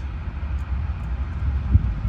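Steady low outdoor rumble, with one small click near the end as a wafer is pressed into a car lock cylinder by hand.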